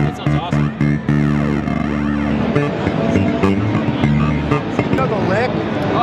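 Electric bass played through a Red Panda bitcrusher pedal in crush mode: held low notes turned gritty and lo-fi, with sweeping, warbling tones laid over them.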